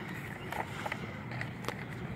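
Small cardboard figure box being opened by hand: a few faint clicks and scrapes as the tuck flap is worked open, over a steady low background noise.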